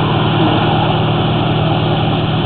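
An engine idling steadily, a constant hum that does not change.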